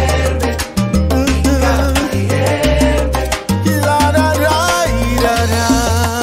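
Salsa band playing an instrumental passage: a bass line stepping between notes under steady percussion strokes, with pitched instrument lines that slide about two-thirds of the way through.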